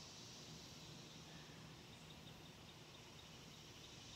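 Near silence: faint outdoor ambience with a steady high hiss of insects, and a faint, evenly repeated high chirp in the second half.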